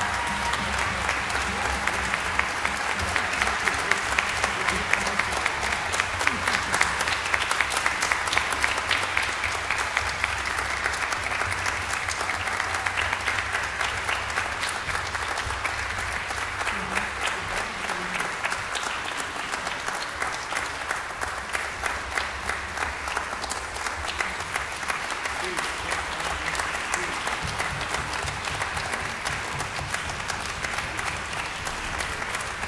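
Concert-hall audience applauding, a dense, steady clapping that is loudest several seconds in and thins slightly toward the end.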